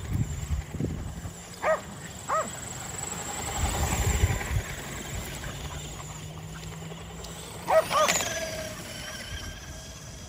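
Kerry Blue Terriers giving short, high yipping barks: two just under a second apart, then two more close together about six seconds later, over a low rumbling noise.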